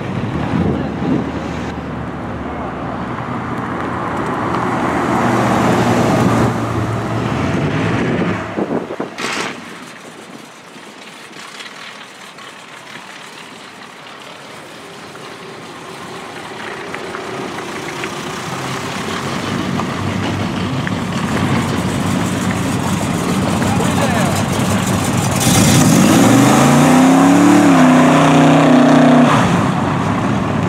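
Old cars driving past on a street, then an early-1970s Chevrolet Chevelle SS V8 revved hard through a burnout near the end. Its engine note climbs and dips over about four seconds under a loud hiss of spinning tyres.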